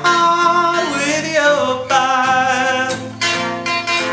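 A man singing a gospel worship song, holding and bending long notes, accompanied by a strummed acoustic guitar. The voice drops out near the end while the guitar keeps going.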